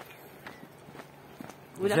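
Faint footsteps of a walker on a paved road, a few soft irregular steps over a low hiss, with a short exclamation near the end.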